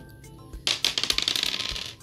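A small board-game die rattling and clicking as it is thrown and tumbles onto a tabletop. The rapid clicking starts a little under a second in and lasts about a second.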